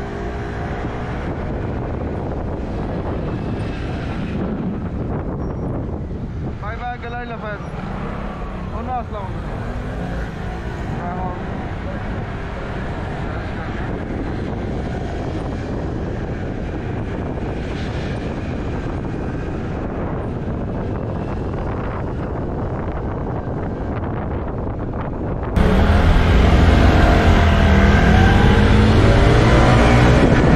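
Motorcycle riding through city traffic, heard from the bike: a steady mix of engine, tyre and passing-traffic noise with wind on the microphone. The sound becomes abruptly louder, with a heavier low rumble, near the end.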